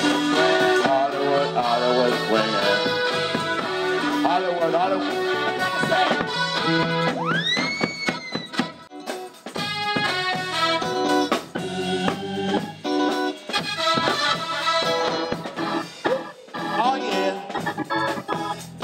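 Live soul band playing: organ-toned keyboard over electric bass and drum kit, with one tone sweeping sharply upward about seven seconds in.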